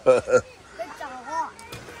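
A man's voice briefly at the start, then faint children's voices calling and chattering in the background.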